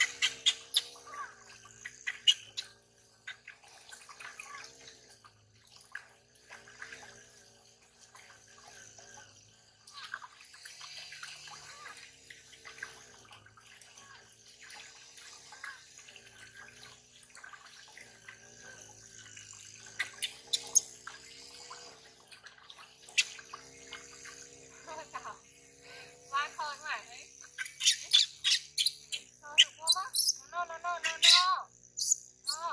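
Water splashing and dripping in a metal basin as a baby monkey is dipped and washed by hand, with high-pitched squeals and cries from the monkey. The splashes and calls come in bursts, busiest near the end.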